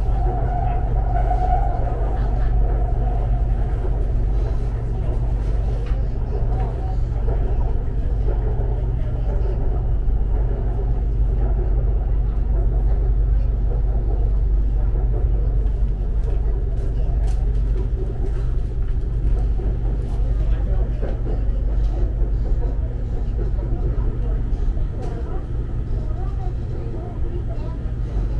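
Interior of a moving BTS Skytrain carriage: the steady low rumble of the elevated train running along its track, with faint passenger voices in the background.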